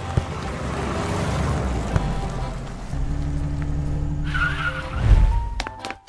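Car sound effect for a toy car, an engine noise that swells and fades, with a short squeal and a low thump near the end, over background music.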